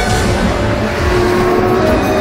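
A car engine revving, mixed with theme music, coming in suddenly and loud.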